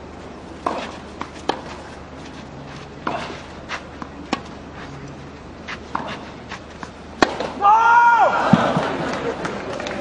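Tennis rally: sharp knocks of racket strikes and ball bounces every half second to a second and a half. About seven and a half seconds in, the point ends with a loud cry and a crowd reaction that carries on.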